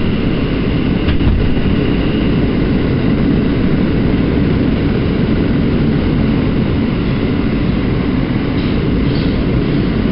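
New York City subway car running at speed, heard from inside the car: a steady loud rumble of wheels on rail, with a faint high whine that fades out about two seconds in and a knock about a second in.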